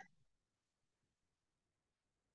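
Near silence: the faint hiss of a quiet room, with no distinct sound.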